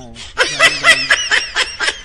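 A person laughing in a quick run of short bursts, about seven a second, starting about half a second in.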